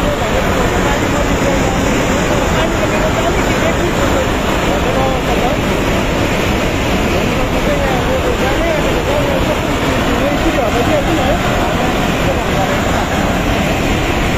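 Muddy floodwater from a cloudburst flash flood rushing down a river channel in a loud, steady torrent, with people's voices faintly over it.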